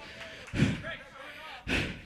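Two dull thuds on stage, one about half a second in and a sharper one near the end, over faint background voices.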